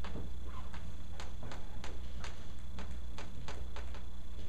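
Chalk clicking and tapping against a blackboard while drawing: a string of short, sharp clicks, about two to three a second, over a steady low room hum.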